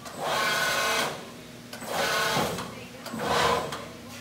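RAS Turbo Bend Plus sheet-metal folding machine's motorized drives whirring in three short runs of under a second each, separated by brief pauses, as the machine's beams move through a cycle.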